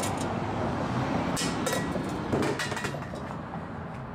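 Steady low vehicle engine rumble in a truck yard, with a few brief sharp knocks about one and a half and two and a half seconds in.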